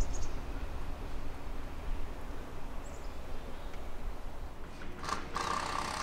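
Faint outdoor ambience: a steady low rumble, with a brief knock about five seconds in followed by a steady hum.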